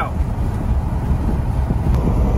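Steady low rumble of wind and road noise from an old Jeep Wrangler cruising at highway speed, heard from inside the cab.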